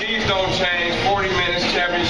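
Indistinct chatter of several voices talking over one another.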